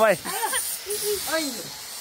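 Short bits of talk over a steady high-pitched hiss.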